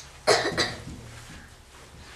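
A person coughing: two quick coughs close together, about a quarter second in.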